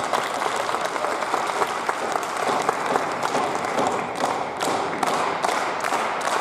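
Audience applauding in a hall. About two-thirds of the way through it settles into steady rhythmic clapping, about two claps a second.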